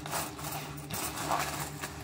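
Coins being handled as change money is put ready, a few small knocks and clinks over a steady low hum inside the bus.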